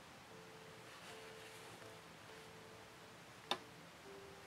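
Quiet handling of a rubber band bracelet while a plastic c-clip is hooked into its end loops, with a single sharp click about three and a half seconds in.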